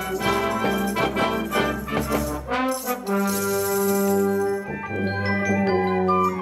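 School marching band of brass and percussion playing. A busy rhythmic passage gives way, after a quick flourish about halfway through, to a long held brass chord with shimmering high percussion over it.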